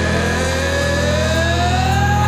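Instrumental passage of a heavy southern rock song: a distorted electric guitar holds one long note that slowly bends upward over a steady low chord.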